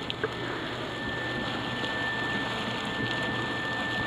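Insulation blower running, with cellulose insulation rushing through its hose: a steady hiss with a thin, steady high whine over it.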